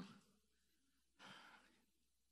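A short sigh or exhaled breath close to a handheld microphone, lasting about half a second just past the middle of an otherwise near-silent pause.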